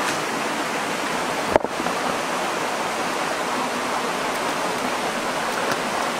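Shallow rocky stream running steadily over stones, with a single sharp knock about a second and a half in.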